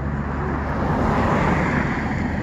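A road vehicle passing by, its tyre and engine noise swelling to a peak about a second and a half in and then fading.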